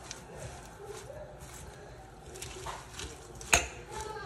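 Fork tossing chopped lettuce and vegetables in a glass bowl: soft rustling of the leaves, with one sharp click of the fork against the glass about three and a half seconds in.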